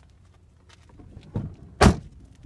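Two knocks against a pickup truck's cab door about half a second apart, the second much louder and sharper.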